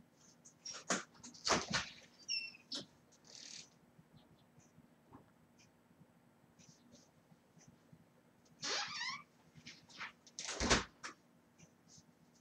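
A house's front door being opened and shut, with scattered knocks and a brief high squeak early on. About ten and a half seconds in it closes with a thud, the loudest sound.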